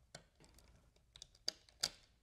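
A few faint, sharp clicks and taps of a small flathead screwdriver working the terminal screw on a plastic thermostat base while the yellow wire is loosened; the two loudest clicks come in the second half.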